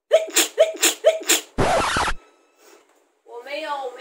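A young woman's voice in five short, breathy exclamations, then a half-second burst of hissing noise that starts and cuts off sharply.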